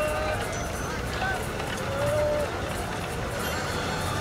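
Town street ambience: a steady murmur of background noise with distant voices calling out now and then.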